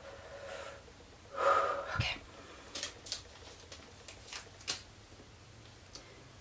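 A woman's breathy, voiced sigh about a second and a half in, then a soft low thump and several light clicks of something small being handled.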